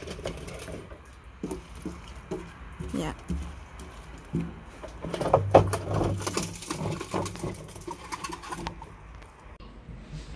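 Manual grape crusher at work: its rollers turning and crushing black grapes, with irregular clicks and crunches.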